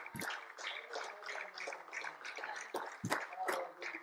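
Scattered hand clapping from a few people in a small congregation, irregular claps with a short louder flurry about three seconds in, and a faint voice or two underneath.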